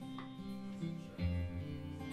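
Acoustic guitar being played, its chords ringing softly, with a low note sounding from just past a second in.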